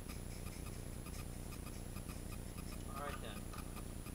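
Clockwork ticking of a small wind-up toy's spring motor running down: a steady, even ticking.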